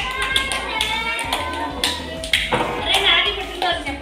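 A group of children and adults clapping in time while singing together, a birthday song at a cake-cutting.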